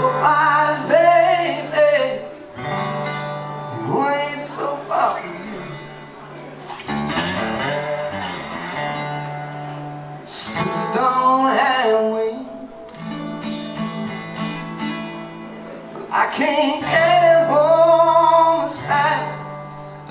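A man sings a blues song over his own metal-bodied resonator guitar, in several sung phrases with the guitar playing between them.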